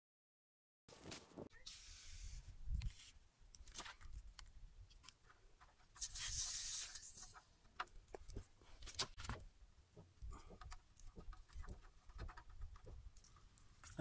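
Faint hissing and clicking from an aerosol can of Fix-a-Flat tire sealant being discharged through its hose into the tire valve, with two short hisses, one about a second in and one about six seconds in, among scattered clicks and handling knocks.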